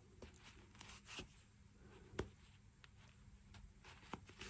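Near silence, with a few faint, brief ticks and rustles from a sewing needle and yarn being drawn through crocheted fabric. The clearest tick comes a little past two seconds.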